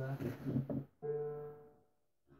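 A single string plucked on a homemade three-string fretless lute strung with guitar strings, about a second in. The note rings and fades out within a second as the strings are sounded to check their tuning, meant to be a D power chord.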